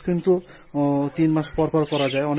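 A man talking, with a faint, rapid, evenly pulsing high trill behind his voice.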